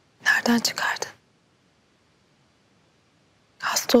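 Only soft, hushed speech in Turkish: two short phrases about three seconds apart, with near silence between them.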